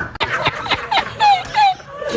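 A man laughing in a quick run of short, high-pitched squeals, each falling in pitch.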